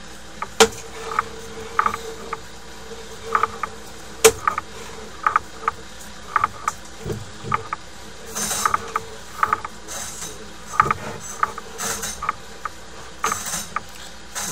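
Sewer inspection camera push cable being pulled back and wound onto its reel, with irregular mechanical clicks about two a second and two sharper snaps, one about half a second in and one about four seconds in.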